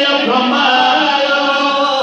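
A man chanting a Sindhi naat, a devotional poem in praise of the Prophet, into a microphone, in long held notes that waver and bend slowly in pitch.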